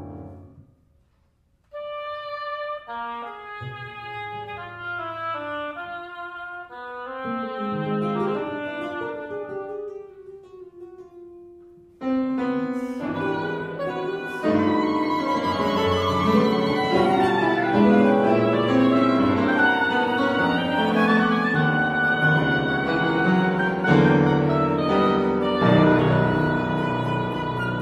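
Contemporary chamber quartet of flute, oboe, electric guitar and piano playing. A fading sound drops to near silence about a second in, sparse held and descending lines follow, and about twelve seconds in the ensemble comes in suddenly with a loud, dense texture that thickens and stays loud.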